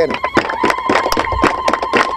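Quick clapping, about eight claps a second, with a steady high-pitched tone held over it from about half a second in.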